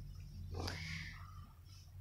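A short breathy laugh about half a second in, over a low steady background hum.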